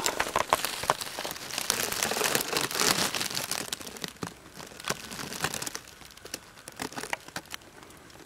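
Dry leaf litter and brush rustling and crackling with many small sharp clicks, busy at first and thinning out over the second half.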